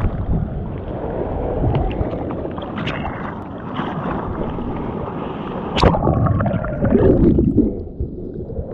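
Muffled, irregular water sloshing and wind rumble on a microphone, with a sharp knock about six seconds in.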